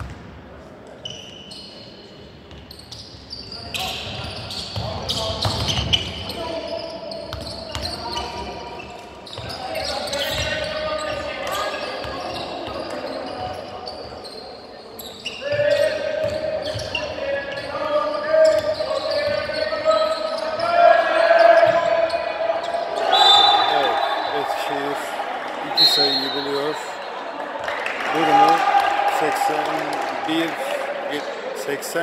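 Basketball game sound in a large echoing sports hall: the ball bouncing on the hardwood court while players and spectators shout. Short high-pitched whistle blasts come about two thirds of the way through and again a few seconds later, typical of a referee's whistle stopping play.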